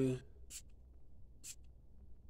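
Two short hissing sprays, about a second apart, from the pump atomizer of a Perry Ellis cologne bottle.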